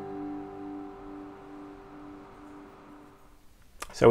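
Acoustic guitar's final chord ringing on and slowly dying away, the last notes fading out a little over three seconds in.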